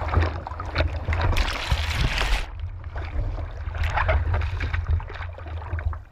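Sea water splashing and sloshing around a surfboard right at the camera, with a heavy wind rumble on the microphone throughout. A louder rush of spray or whitewater comes about a second and a half in and lasts about a second.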